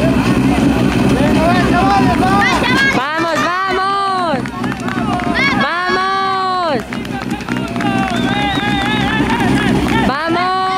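Spectators shouting encouragement in long, drawn-out calls over a steady low engine note from the idling rally car.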